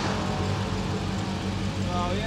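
Dodge Challenger SRT Hellcat's supercharged 6.2-litre HEMI V8 idling steadily with a low, even hum.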